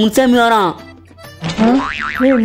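Cartoonish comedy sound effect, boing-like: a pitched tone slides down and fades over the first half-second, then after a short gap another rising, wobbling glide starts near the end.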